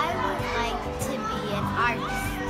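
A girl's voice answering briefly, over children playing in the background and steady background music.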